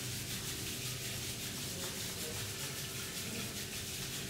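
Palms of the hands rubbed briskly together, a steady dry rubbing that warms them before they are cupped over the eyes.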